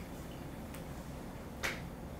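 Quiet room tone with a low steady hum. A single sharp click about one and a half seconds in, with a fainter tick before it.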